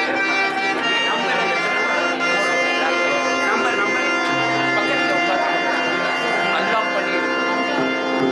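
Devotional bhajan music: a harmonium holding sustained chords with tabla playing along, steady throughout.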